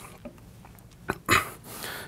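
A faint single click about a second in, followed by a short breath drawn in just before speaking resumes.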